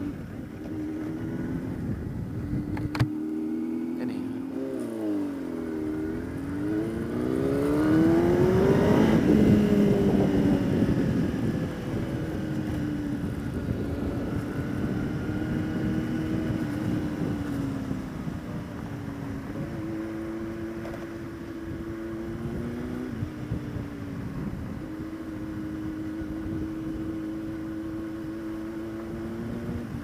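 Kawasaki ZX-10R's inline-four engine under way in traffic: it revs up to a peak about nine seconds in, the loudest part, then eases off and holds a steady cruise, with small changes in revs later on. A sharp click sounds about three seconds in.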